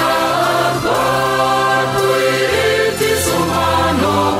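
A church choir sings a hymn in Wolof, many voices together in harmony, with long held notes.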